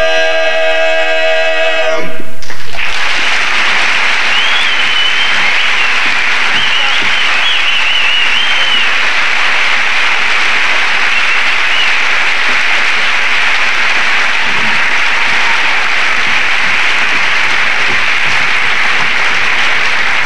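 A four-man barbershop quartet holds its final chord for about two seconds and cuts it off. An audience's applause and cheering swells loudly at the cutoff, then runs on steadily, with a high wavering tone over it for a few seconds.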